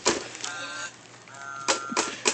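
Christmas wrapping paper crinkling and tearing as a present is unwrapped by hand, with two brief steady high tones, one about half a second in and one near the end.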